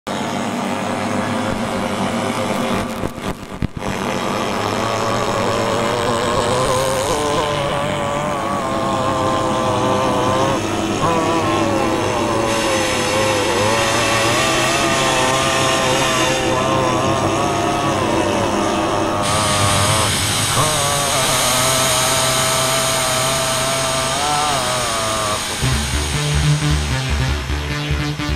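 Electronic noise drone: a steady hiss with wavering, sliding tones in the middle range over a low hum, briefly dropping out about three seconds in.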